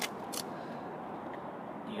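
Steady outdoor background noise with no engine running, broken by a faint click at the start and another about half a second in.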